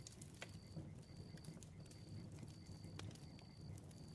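Faint campfire background: scattered soft crackling pops, with a faint high tone in short pulses about every three-quarters of a second.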